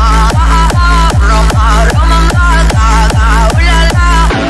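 Fast hard dance music: a pounding four-on-the-floor kick drum, about two and a half beats a second, under a wavering synth lead melody.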